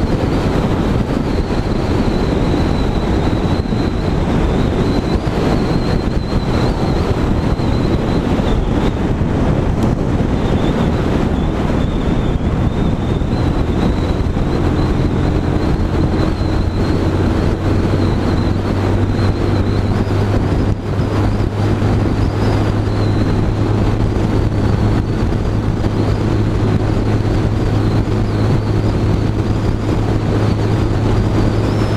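A 125cc Sinnis Outlaw motorcycle being ridden at a steady cruise, its engine note under a heavy rush of wind on the microphone. A steady low engine hum grows stronger about halfway through.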